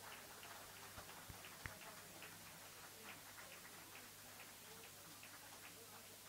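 Near silence in the room: faint background hiss with scattered soft clicks and ticks, and a couple of faint low knocks in the first two seconds.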